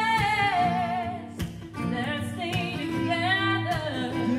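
A woman and a man singing with a strummed acoustic guitar. A long held note with vibrato falls away about half a second in, and further sung runs follow.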